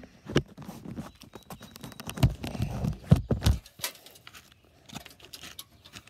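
Handling noise from resetting a small squirrel and chipmunk trap: irregular clicks and knocks as the trap is worked, with heavier rubbing and knocking against the phone microphone through the middle, then a few sparser clicks.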